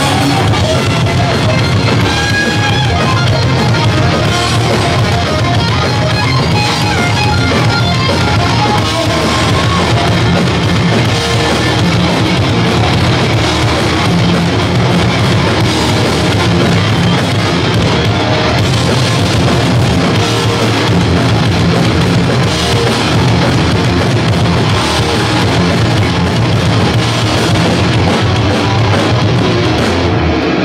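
Hardcore punk band playing live, loud distorted electric guitars over a driving drum kit, held at a steady level with no break.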